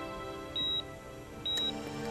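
Steady, soft background music under a hospital patient monitor beeping. Two short high beeps come just under a second apart and stand out above the music.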